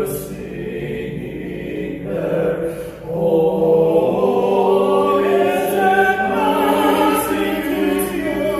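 Male vocal quartet singing in harmony, several voices holding notes together. A short break comes about three seconds in, then the voices return louder on held chords.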